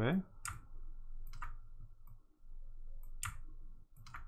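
Computer mouse clicking three times, irregularly spaced, as an object is rotated in 3D software.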